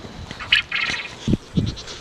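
A goat bleating briefly about half a second in, followed by fainter calls, with two dull low thumps later.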